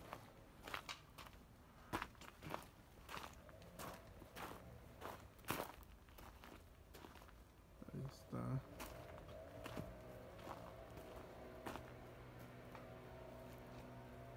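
Faint footsteps on a gravel and dirt path, about two steps a second. After about eight seconds a steady low hum sets in behind them.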